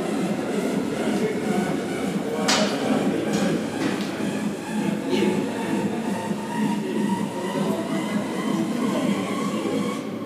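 Loud, steady din of a busy gym hall with no words in it, broken by a few sharp knocks, the loudest about two and a half seconds in.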